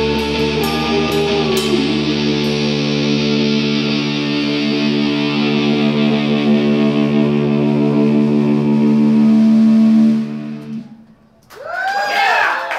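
Live rock band's distorted electric guitars holding a final chord, with a few last drum hits in the first two seconds. The chord rings on for several seconds and then cuts off sharply about eleven seconds in. The crowd starts to cheer just at the end.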